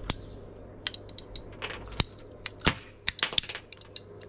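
Scattered sharp clicks and taps of plastic push-fit plumbing fittings, pipe and a plastic pipe cutter being handled and set down on a glass tabletop. The loudest clicks come about two seconds and about two and three-quarter seconds in.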